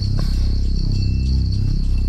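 Low, sustained background score of deep drawn-out tones, slowly shifting and softly pulsing. A steady high cricket chirr runs underneath.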